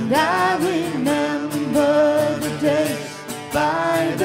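Acoustic guitar strummed in a steady rhythm under a live vocal that comes in right at the start with long, held, slightly wavering notes.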